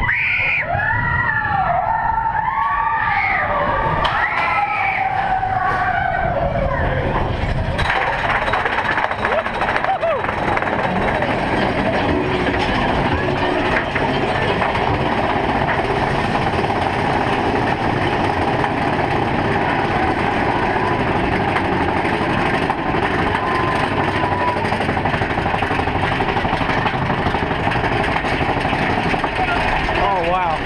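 Big Thunder Mountain Railroad mine-train roller coaster running along its track with a continuous rumble and clatter. Riders yell and whoop during the first several seconds.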